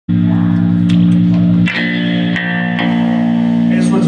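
Rockabilly trio of upright bass, electric guitar and drums playing live: long held, ringing chords that change about a second and a half in, with a few sharp drum or cymbal hits.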